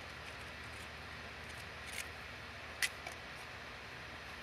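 Quiet handling of waxed linen cord as it is tied into an overhand knot: a steady low hiss with two small clicks, one about two seconds in and a sharper one just before three seconds.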